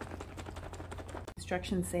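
Plastic screw-top lid being twisted off a small tub, a quick run of clicks and scrapes, then cut off suddenly just before a woman starts speaking.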